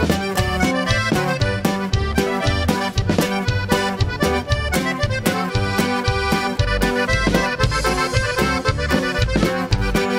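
Norteño band playing a polka live: a button accordion carries the melody over electric bass and drum kit in a steady, even beat.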